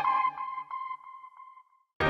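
Closing note of a TV news programme's opening theme music: a ringing tone that repeats as a fading echo and dies away about three quarters of the way through, followed by silence.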